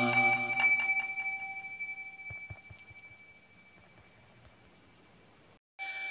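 A struck Buddhist prayer bell rings on after the chanting stops and fades to near silence over about three seconds, with a few faint knocks as it dies away. Its ring comes back faintly just before the end.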